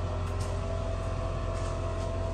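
Steady low idling drone of the truck's engine heard inside the ambulance box, with a fine fast pulse in the bass and a light hum over it. A few faint ticks, about half a second in and again late on.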